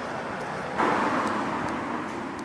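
City street traffic noise, with a car passing; the sound grows suddenly louder just under a second in and then slowly fades.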